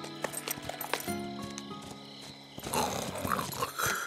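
Cartoon background music over horses' hooves clip-clopping. A louder burst near the end, with a horse briefly neighing.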